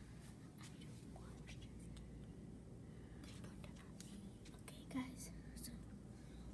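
Faint whispering from children keeping quiet, with a short louder sound about five seconds in.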